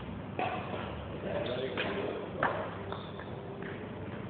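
Badminton racket hitting shuttlecocks: three sharp smacks, the loudest about two and a half seconds in.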